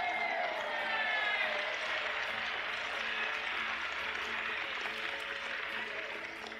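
Large crowd applauding and cheering after a line of a speech, with a shout or two in the first second and a half and easing off toward the end, over soft background music with held notes.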